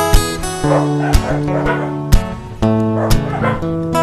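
Background music: acoustic guitar strumming chords.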